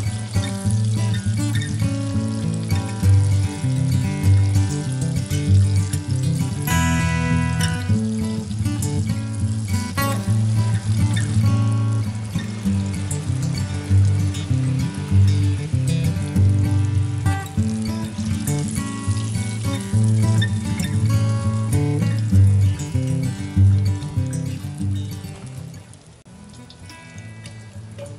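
Instrumental background music with a steady, repeating bass line, fading out near the end, over the sizzle of battered fish deep-frying in hot oil.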